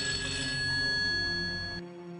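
A telephone ringing: one long electronic ring that cuts off sharply near the end, over low background music.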